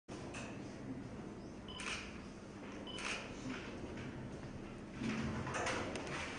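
Quiet classroom room tone with a faint steady hum and three brief sharp noises in the first three seconds, then a little more activity near the end.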